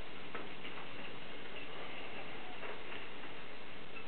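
Steady room hiss with a few faint clicks and rustles from sheets of paper being handled at a lectern.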